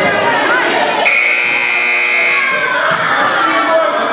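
Gym scoreboard buzzer sounding once for a little over a second, starting about a second in and cutting off, over children's and spectators' voices in the hall.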